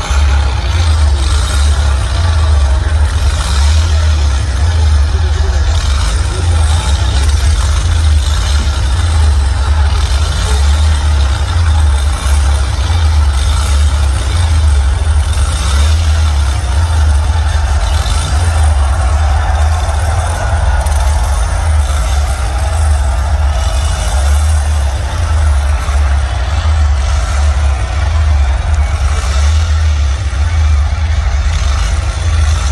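Loud, deep motorcycle engine rumble, throbbing unevenly, played through an arena PA system as the bike comes on stage.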